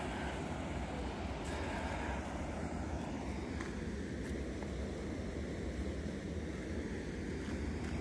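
Steady rush of river water pouring through the arches of a stone bridge.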